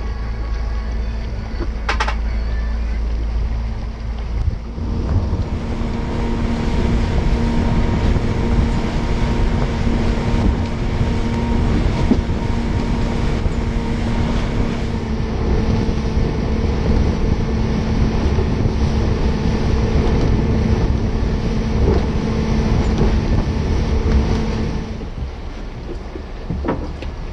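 Boat's outboard motor running steadily under way, with a constant rumbling drone, under rushing wind and water noise; it gets louder about four or five seconds in and drops back near the end.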